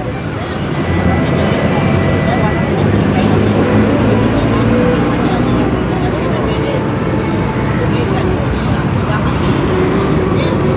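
Road traffic on a busy street: a vehicle engine running close by with a steady low hum under general traffic noise, and a brief hiss about eight seconds in.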